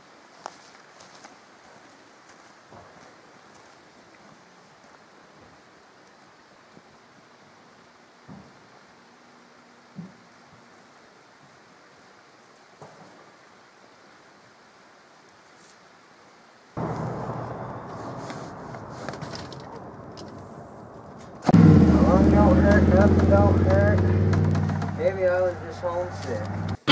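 Quiet forest background with a few faint, scattered clicks. About 17 seconds in, a steady rumbling noise starts abruptly, and about 21 seconds in, loud rock music with guitar comes in.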